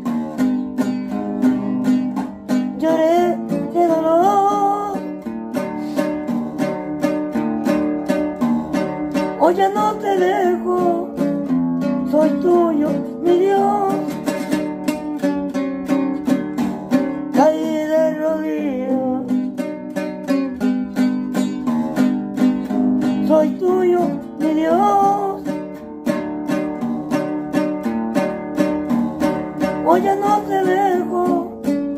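Acoustic guitar strummed in a steady rhythm, playing a praise-song accompaniment. A man's voice joins in at times with long wavering sung notes.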